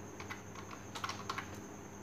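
Typing on a computer keyboard: a quick run of separate keystrokes in the first second and a half as a variable name is entered, then a pause.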